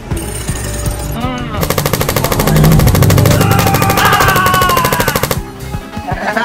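Rapid automatic-gunfire sound effect: a fast, even rattle of shots starting a little under two seconds in and lasting about four seconds, over background music, fired to go with a toy blaster.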